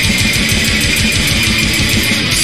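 Melodic black metal recording: rapid drumming under a dense wall of distorted guitars, loud and steady throughout.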